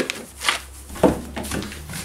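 A few knocks, roughly half a second apart, over a low steady hum.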